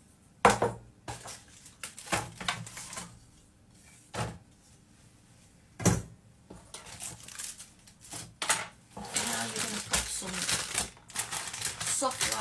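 A stainless steel saucepan and kitchen things knocking on a worktop: a handful of sharp knocks and clatters, the loudest about six seconds in as the pan is set down. Near the end comes a stretch of rustling as a plastic bag of brown sugar is handled.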